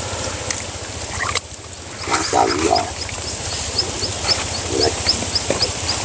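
Muddy water sloshing and splashing as a person wades and gropes by hand in a shallow ditch. Over a steady low rumble, a run of short high chirps repeats about three or four times a second from about halfway in.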